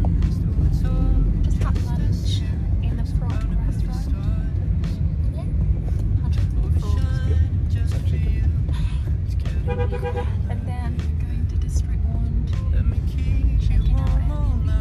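Car interior road noise: a steady low rumble of the car driving, heard from the back seat under talk, with a brief pitched tone about ten seconds in.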